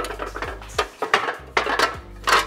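A stack of metal baking pans on a glass tray clattering as it is carried and set down on a countertop, with several clanks.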